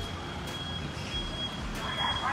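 City street ambience: a low traffic rumble, with a thin high-pitched tone that keeps sounding with short breaks.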